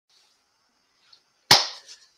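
A single sharp hand clap about one and a half seconds in, dying away quickly, after near silence.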